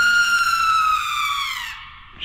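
A single high, sustained tone that slides slowly downward and fades out shortly before the end.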